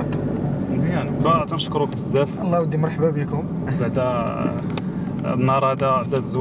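Men talking inside a moving BMW 318d (F30) saloon, over the steady engine and road noise of the cabin.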